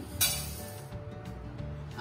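Granulated sugar poured from a bowl into an empty nonstick wok: a short rush of grains hitting the pan just after the start, fading within about half a second, over background music.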